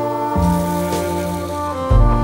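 Background music: held chords over a deep bass note that changes about half a second in and again near the end.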